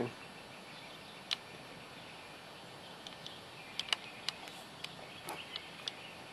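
Faint outdoor background with scattered short, high chirps that grow more frequent in the last two seconds: small birds calling.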